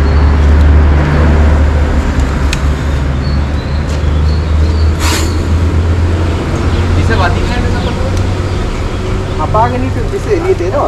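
A heavy vehicle's engine idling with a steady low rumble, plus a single sharp knock about halfway through and brief voices near the end.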